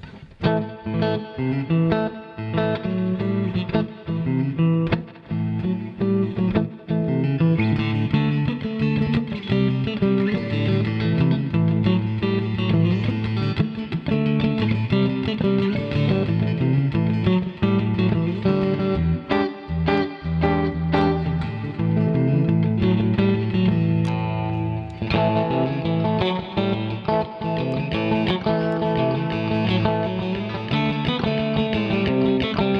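Stock Mexican Fender Stratocaster electric guitar played without a break, a run of picked notes and chords. It is on its stock single-coil pickups with the selector in an in-between position, which cancels the hum but leaves the tone a little bit muddy.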